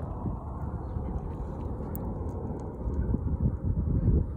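Wind buffeting the microphone: a low, uneven rumble with no clear pitch, and a faint click about halfway through.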